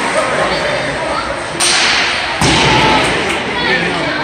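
Ice hockey play in a rink: two sharp cracks of stick and puck, about a second and a half in and again under a second later. The second is louder and heavier, and it rings on in the arena.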